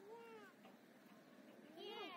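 Two short, faint, high-pitched cries with a bending pitch: one rises and falls at the start, and one falls near the end.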